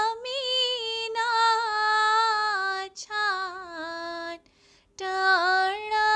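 A woman singing a ginan, an Ismaili devotional hymn, solo with no accompaniment heard. She holds long, slowly bending notes, broken by a quick breath about three seconds in and a longer pause shortly before the end.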